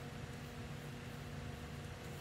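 Steady low hum and hiss of an electric fan running in a small room.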